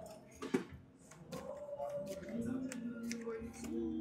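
Playing cards being dealt onto a felt blackjack table: a few light card snaps, the sharpest about half a second in. Behind them are steady background tones of casino music.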